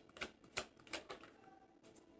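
A tarot deck being shuffled by hand: a few faint, sharp card clicks at uneven intervals, stopping a little after a second in.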